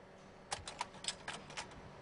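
After about half a second of near silence, a run of light, sharp clicks comes at uneven spacing, roughly eight in a second and a half.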